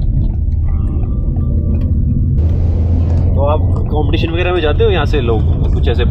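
A car's engine and road noise heard from inside the cabin while driving, a steady low rumble. A man's voice comes in over it about halfway through.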